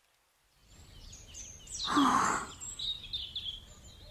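Background noise rising out of silence about half a second in, with short high chirps like small birds and a brief louder rush of noise about two seconds in.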